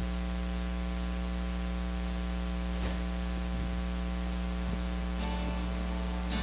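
Steady electrical mains hum with hiss, with a faint click about three seconds in.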